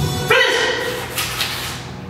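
A child's loud voiced shout, the kind students give during a kung fu form, starting about a third of a second in, held briefly and then fading.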